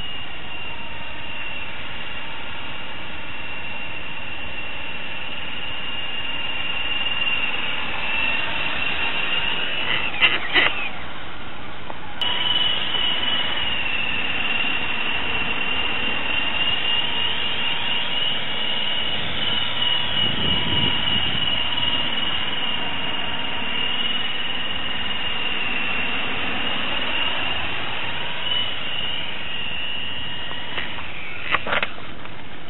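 Electric motors and rotors of a radio-controlled helicopter in flight, heard close up as a loud, steady high-pitched whine over a lower hum. The whine breaks off with a few clicks about ten seconds in, then comes back slightly louder and holds steady.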